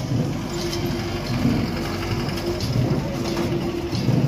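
Many Garo long drums beaten together in the Wangala dance, a dense, steady rumble of beats over crowd noise, with a low held note sounding in several stretches.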